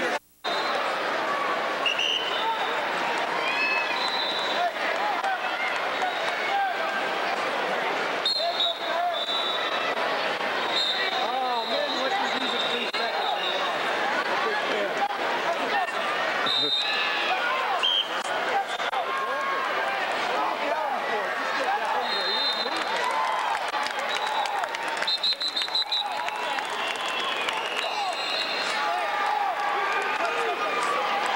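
Crowd chatter in a gymnasium: many overlapping voices with no single speaker standing out, and short high-pitched tones now and then. The sound cuts out briefly just after the start.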